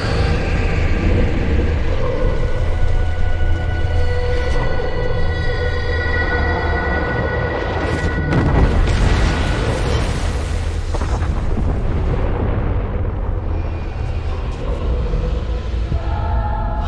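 Movie sound design of a space-ship explosion and crash: a deep, continuous rumble of explosions under a dark dramatic score with long held notes, swelling about eight to nine seconds in.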